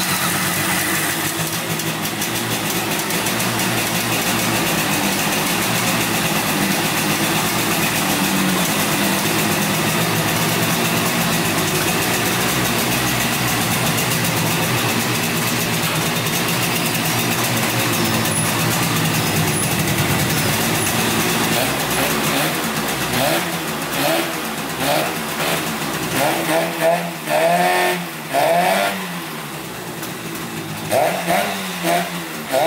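1971 Yamaha CS200 two-stroke twin-cylinder engine running steadily on choke, just started after sitting for years. In the last several seconds the throttle is blipped in a string of short revs that rise and fall.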